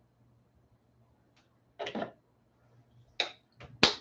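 A plastic tube of acrylic paint being handled and closed: a short rustle about two seconds in, then two or three sharp clicks near the end, over a faint steady low hum.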